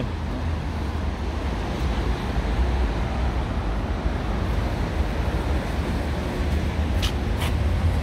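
Steady urban street traffic noise with a heavy low rumble, and a couple of short sharp clicks about seven seconds in.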